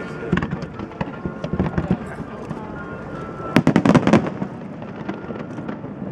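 Fireworks bursting in quick succession, crackling throughout, with a dense run of loud bangs about three and a half seconds in.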